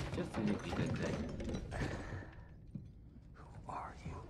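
Quiet, indistinct speech for the first couple of seconds, then a lull and a brief voice near the end.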